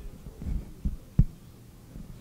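Handheld microphone being picked up and handled: three low thumps in quick succession, the last one sharp and the loudest.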